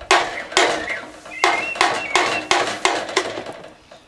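Claw hammer repeatedly bashing a sheet-metal panel, two to three blows a second, each blow clanging with a short metallic ring.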